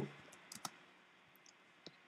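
A few faint computer keyboard keystrokes: isolated clicks about half a second in and again near the end, against near-silent room tone.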